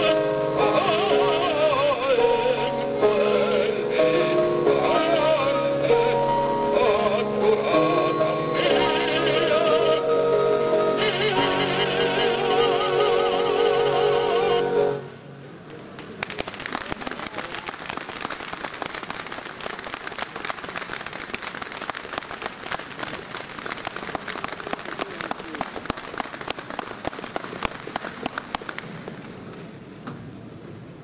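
An operatic baritone sings with a 1915 Steinway & Sons grand piano, ending on a long held note with wide vibrato about halfway through. The music then stops abruptly and audience applause follows, dying down near the end.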